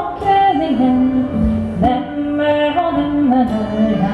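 Live Nordic folk song: a woman singing a slow melody in long held notes, with string instruments accompanying.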